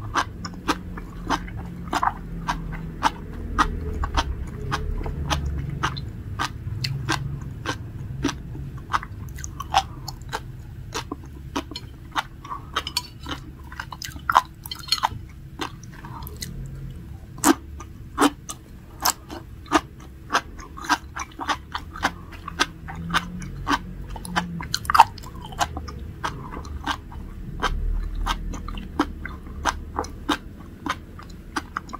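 Close-up chewing and biting of sea grapes (Caulerpa lentillifera seaweed), their small beads popping between the teeth in a steady run of sharp clicks, a few a second.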